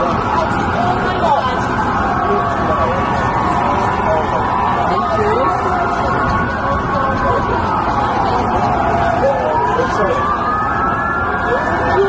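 Emergency vehicle sirens wailing in slow rising and falling sweeps, over a steady wash of city street noise and crowd babble.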